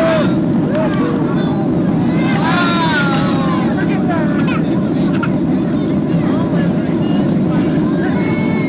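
Steady low cabin noise of a jet airliner in cruise, heard from a window seat, with indistinct passengers' voices and exclamations over it.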